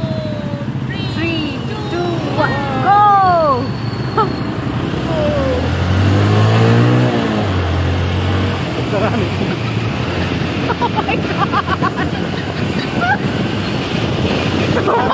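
Riding a motor scooter in city traffic: engine running under a steady rush of wind and road noise, with passing vehicles. About six to seven seconds in, an engine's pitch rises and then falls, as a vehicle accelerates and goes by.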